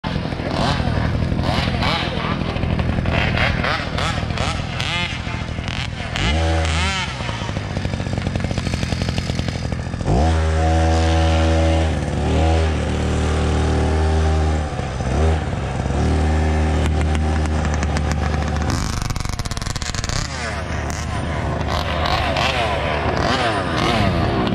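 Small gasoline engine revving, with rising pitch about six seconds in and again near ten seconds, then running steadily at speed for several seconds before easing off.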